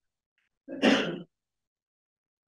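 A person clearing their throat once, briefly, about two-thirds of a second in, then the room goes silent.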